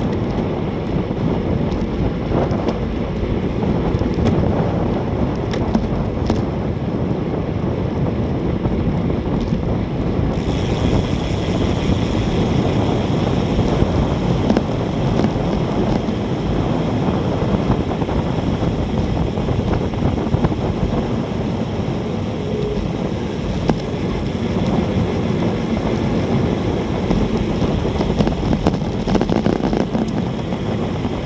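Wind rushing over the microphone of a camera on a road bike descending at about 30 mph, a loud steady roar. About ten seconds in a sharper hiss joins it.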